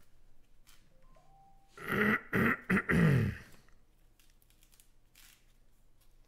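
A man clearing his throat: one rough, rasping burst about two seconds in, lasting a little over a second.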